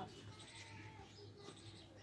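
Near silence: faint background ambience with no distinct sound.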